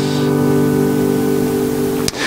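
An acoustic guitar's final chord of a worship song rings on steadily after the last sung line, with a light hiss behind it.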